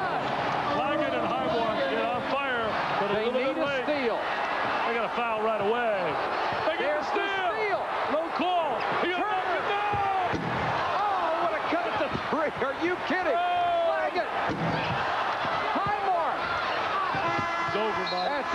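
Arena crowd noise with basketball shoes squeaking on the hardwood court and the ball bouncing during the last seconds of play. The game-ending horn starts sounding just before the end.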